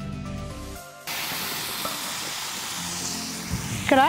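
Background music that cuts off about a second in, giving way to a steady sizzle of food frying in a metal pan over an open wood fire.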